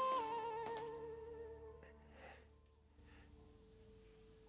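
Background music score: a held, wavering melody that fades out over the first two to three seconds, leaving near silence.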